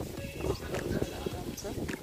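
Footsteps on soft, tilled farm soil as someone walks along the crop rows, making irregular soft knocks and thuds.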